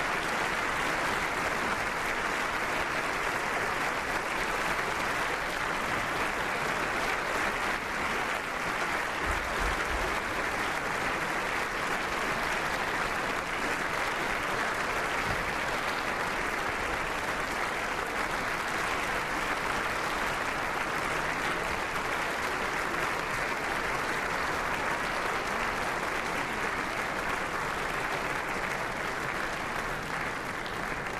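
Sustained applause from a large assembly of people clapping in a big chamber, a standing ovation, steady throughout and easing a little near the end.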